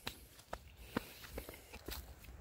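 Light footsteps on dry leaves and grass, about five soft crunches roughly half a second apart.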